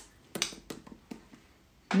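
A few short, light clicks and taps from a lipstick tube being handled, spaced irregularly over the first second and a half.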